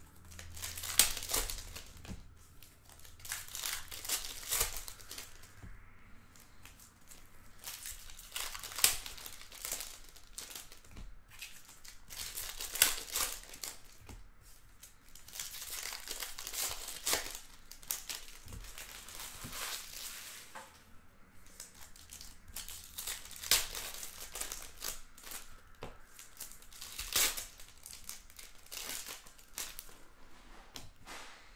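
Plastic wrapping on trading card boxes and packs crinkling and tearing as it is pulled open by hand, in repeated bursts with short pauses between.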